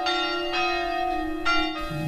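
A church bell tolling, its ringing sustained between strokes, with fresh strokes near the start and again about a second and a half in.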